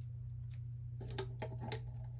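Faint crinkling and clicking of a rolled strip of tin foil rubbing through a hole in a plastic cup as it is pushed in. The small clicks come mostly in the second half, over a steady low hum.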